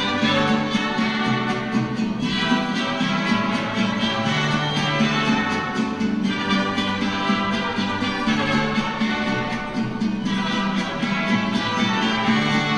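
Instrumental church music: strings and guitar playing slow, held chords that change about every two seconds.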